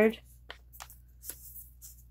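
Faint, short rustles and light taps of paper as hands handle the tucked pages and cards of a handmade paper junk journal.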